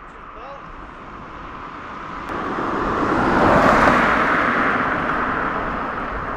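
A road vehicle passing close by. Its tyre and engine noise swells to a peak a little past halfway, then slowly fades.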